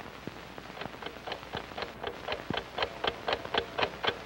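Clock ticking, about four ticks a second and growing steadily louder, over the steady hiss of an old film soundtrack, counting down toward midnight.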